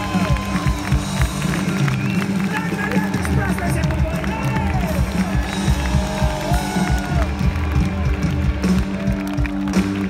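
Rock band playing live on electric guitars, bass and drums through a loud PA, heard from within the audience, with voices from the crowd mixed in.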